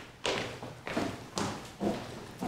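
Footsteps of hard-soled shoes on a wooden floor, about two steps a second, four steps in all, each ringing briefly in a reverberant hall.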